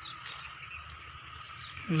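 A steady, faint chorus of frogs calling in the background, with no single call standing out; a man's voice begins right at the end.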